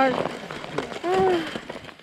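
Kick sled's steel runners scraping and grating over a grit-strewn icy road, a rough, uneven scrape. The runners drag because there is a lot of sand on the road, then the scrape fades out near the end.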